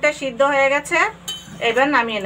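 Steel ladle stirring a pan of cabbage curry, scraping and clinking metal on metal against the aluminium pan.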